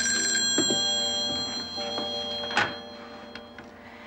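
Telephone bell ringing: one long ring that fades out over the first three and a half seconds, with a thump about two and a half seconds in.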